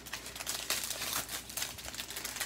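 Small clear plastic bags of diamond-painting drills crinkling as they are handled and shuffled against the canvas's plastic cover sheet: a dense, irregular run of small crackles.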